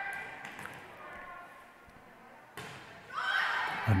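Quiet, echoing room tone of a large gym. About two and a half seconds in, a volleyball is struck with a sudden thud on the serve, and then the voices of players and spectators rise as the rally starts.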